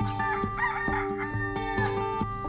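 A rooster crows once, a wavering call about a second and a half long, over plucked acoustic guitar music.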